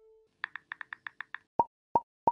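Animated-graphics pop sound effects: the last held note of the outro music fades away, then a quick run of about seven soft pops is followed by two sharp, louder clicks, timed with the icons popping onto the closing card.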